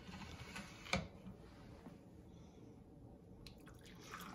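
A single light knock about a second in, like china or the tray being handled, then a faint trickle of hot milk being poured from a small pot into a porcelain cup near the end.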